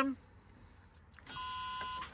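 An old bus's dashboard warning buzzer sounds one steady tone after a faint click about a second in, as the ignition is switched on. The engine does not crank: the battery is too weak after the bus stood unused, and it needs a jump start.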